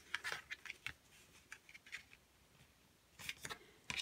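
Faint, scattered rustles and taps of a cardstock card and a bone folder being handled, with a brief cluster of scrapes near the end as the bone folder is pressed along the card.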